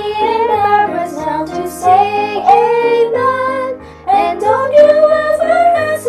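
A female vocal trio singing a gospel hymn in harmony over an instrumental accompaniment, with the voices phrasing together and pausing briefly between lines.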